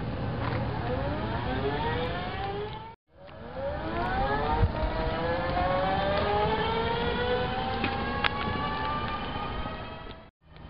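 EW-66 three-wheel mobility scooter's 500-watt brushless electric transaxle motor whining, rising in pitch as the scooter speeds up. The sound cuts off about three seconds in, and a second, slower rising whine follows.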